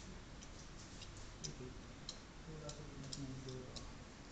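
Faint, irregular light clicks, at times two or three a second, with a low murmur of voices in the second half.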